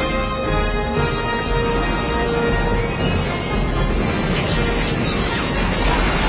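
Dramatic film score music with long held notes, over a dense, steady low rumble of action sound effects.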